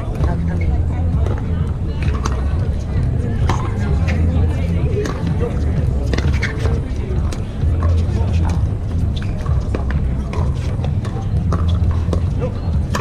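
Pickleball rally: sharp pops of paddles striking the hollow plastic ball, coming irregularly about once a second, over a steady low rumble and background voices.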